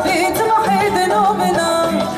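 A woman singing a richly ornamented, wavering melody in the Algerian Andalusian (san'a) style, over sustained instrumental accompaniment.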